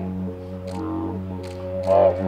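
Didgeridoo playing a continuous low drone, its upper tone rising and falling in repeated swells, with a louder swell near the end.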